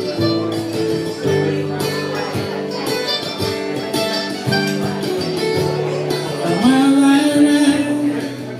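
Acoustic folk music: a steel-string acoustic guitar strumming while a second plucked string instrument plays a melody line. About six and a half seconds in, a sung note slides up and is held.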